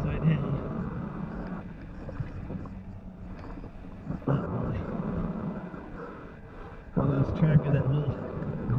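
A man's straining voice and breathing in three bouts as he pushes himself backward on his belly through a low cave crawlway, over the rustle and scrape of his body and clothing on the dirt floor.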